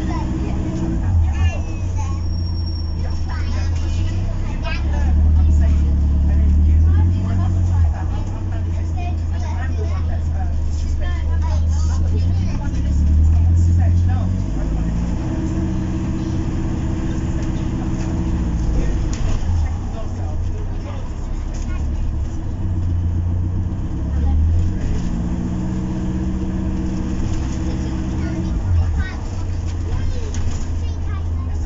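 Cabin sound of an Enviro400 MMC double-decker with a BAE hybrid drive on the move: a deep rumble with a whine that rises and falls several times as the bus speeds up and slows down.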